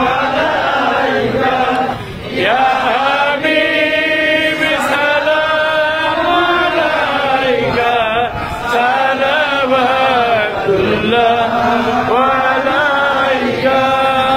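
A man's voice chanting an Islamic devotional chant in long, drawn-out melodic phrases, with a brief dip in loudness about two seconds in.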